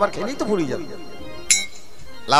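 A voice sliding up and down in pitch, then, about one and a half seconds in, a single bright metallic clink that rings briefly.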